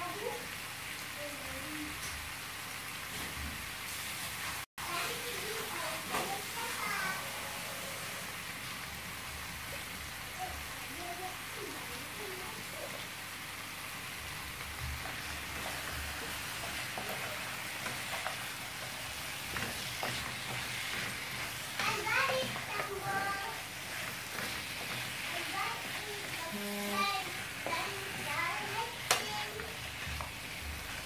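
Chicken, onion and potatoes frying in a pan with a steady sizzle, stirred with a wooden spatula. Voices come in now and then behind it.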